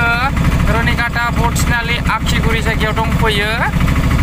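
Engine of a moving vehicle running steadily beneath a voice speaking, heard from inside the vehicle.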